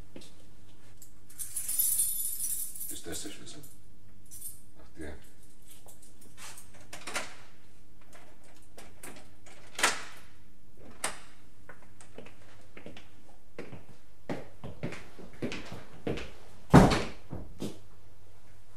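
Radio-play sound effects of keys and a door being worked: a jangling rattle of keys about two seconds in, then scattered clicks and knocks, the loudest a heavy thump near the end, over a steady low hum.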